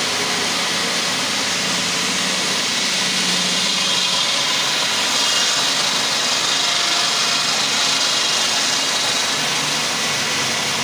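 Large water-cooled circular stone-cutting saw blade running through a big granite block, a steady loud grinding whine with water spray hissing off the blade, swelling a little in the middle.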